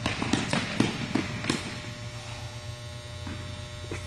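Tennis ball struck by rackets and bouncing on an indoor hard court: a quick run of sharp knocks in the first second and a half, then only a steady low hum of the hall.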